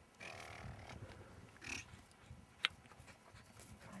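English setter panting and snuffling, with one sharp click about two and a half seconds in.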